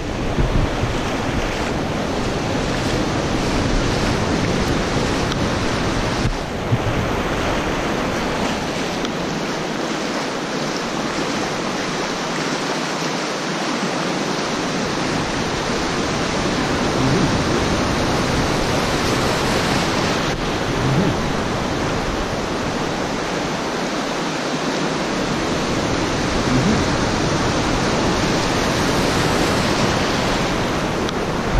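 Ocean surf washing over the shallows in a steady wash, with wind rumbling on the microphone that drops away for a few seconds twice.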